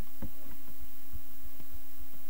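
Steady electrical hum with soft, irregular low thuds underneath, the background of a home recording setup.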